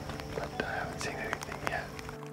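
A man whispering faintly, with scattered sharp light clicks and ticks between the words.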